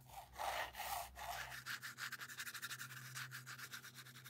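Wide-tooth plastic hair pick scraping a coat of white acrylic paint across a stretched canvas: a faint, dry rubbing scrape made of many fine rapid ticks as the teeth drag, strongest in the first second and a half.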